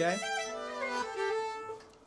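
Steady held notes from an acoustic instrument, sounding together as a sustained chord while the players get ready to start; a lower note drops out about a second in.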